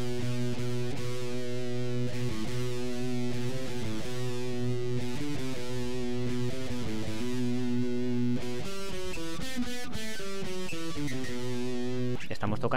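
Electric guitar playing a slow single-note scale over a steady low drone on B, the notes quickening from about two-thirds of the way in. The notes are those of G major with B as the tonic: the B Phrygian mode.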